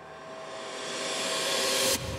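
A rising whoosh sound effect: a hiss with faint steady tones beneath it, swelling in loudness and brightness, then cutting off suddenly at the end.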